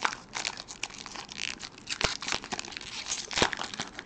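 Foil trading-card pack wrapper being torn open and crinkled by hand: irregular crackling and tearing.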